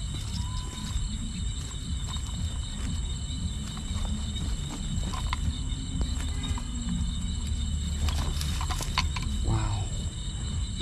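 Night insects keep up a steady high chirring throughout. Over it come low rustling and light clicks and rattles from a wire-mesh fish trap being handled as a fish is worked out of it, with a short exclamation near the end.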